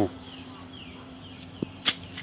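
Faint outdoor background with soft, repeated falling chirps over a steady low hum, broken near the end by a single sharp snap.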